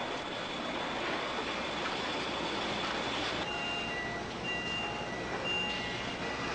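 Car assembly plant ambience: a steady hiss of machinery with a thin high tone, then short electronic beeps repeating about once a second from about halfway through.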